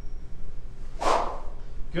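One fast swish of the lightest SuperSpeed Golf training club cutting through the air on a full-speed swing, about a second in, lasting about half a second and dropping in pitch.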